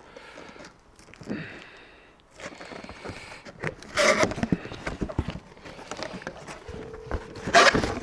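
Cardboard guitar shipping box being opened by hand: its top flaps are pulled up and apart with rustling, scraping cardboard. There are louder bursts about four seconds in and just before the end.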